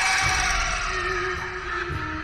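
Background music of held, sustained tones; a new chord enters at the start and a lower held note comes in about a second later.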